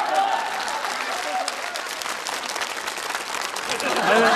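Studio audience applauding steadily, with a man's voice faint beneath it near the start.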